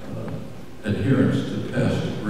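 A man's voice giving a talk into a microphone. A short pause, then he resumes speaking just under a second in.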